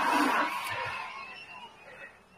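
Faint human voices, perhaps a chuckle, trailing off and fading toward near silence.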